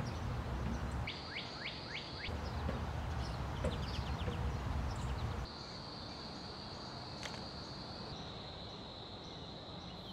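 Outdoor ambience through a doorbell camera's microphone: low rumbling background noise with a few short bird chirps, then a thin steady high tone over quieter background in the second half. The sound changes abruptly several times where separate recordings are joined.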